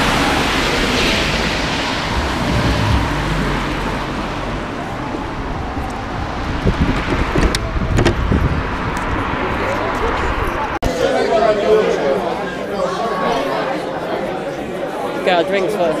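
Outdoor street noise, with a low rumble of traffic and wind on the phone's microphone. About eleven seconds in it cuts sharply to indistinct indoor crowd chatter.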